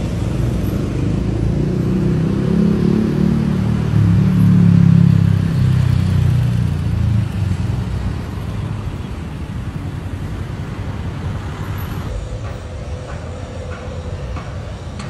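Road traffic beside a congested multi-lane road: a steady low rumble of engines and tyres, loudest about four to six seconds in, then easing a little.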